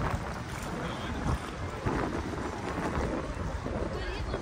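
Wind buffeting the microphone, with choppy lake water lapping against the stone quay wall.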